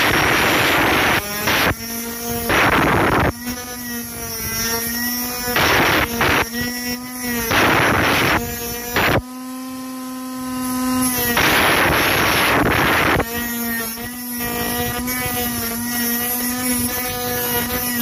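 A 12 V 775 DC motor grinder's abrasive disc cutting into a bundle of thin metal rods: harsh grinding in bursts of a second or so, again and again, alternating with the motor's steady high whine as the disc spins free between cuts. The longest free-running stretch comes just before the middle, followed by a longer grinding pass.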